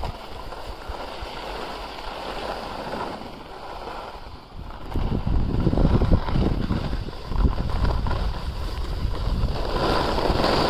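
Skis sliding and scraping over groomed snow with wind rumbling on the phone's microphone, louder from about halfway through.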